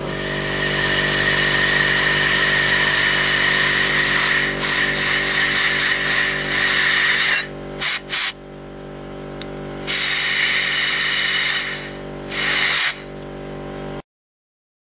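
Compressed air from a blow gun blasting against an RC buggy's tyre, spinning the wheel up: a loud hiss held for about seven seconds, fluttering on and off towards the end of that, then cut and restarted in shorter blasts, a long one near the tenth second and a brief one late on. A steady hum runs underneath throughout.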